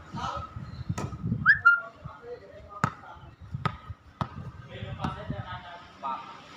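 A volleyball struck five times at irregular intervals during a rally, each hit a sharp slap, with players' voices calling out between the hits.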